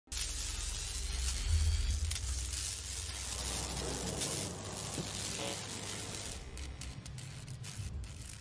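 Logo-intro sound effect: a crackling, sizzling electronic noise over a deep bass rumble, loudest about a second and a half in, then slowly dying down.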